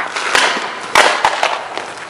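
Scuffling and rustling in two short bursts, with a few sharp knocks around the middle, during a staged fight move in which the hit misses.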